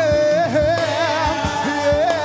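A gospel praise team singing live. A lead voice carries a wavering, ornamented melody, with backing singers and instrumental accompaniment over a steady beat.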